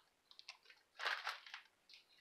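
Soft crinkling of a plastic comic-book bag as a bagged comic is handled. There are a few faint ticks, then one short rustle about a second in.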